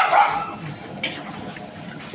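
A dog barks briefly near the start, over the steady sizzle of a wok stir-fry being turned with a metal ladle and spatula. A sharp metal clink comes about a second in.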